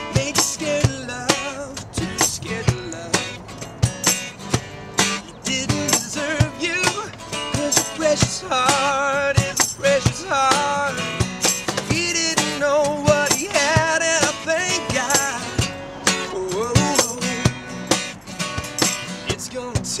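Acoustic band intro: two acoustic guitars strumming with a cajón keeping a steady beat, and a man's voice singing melodic lines over them.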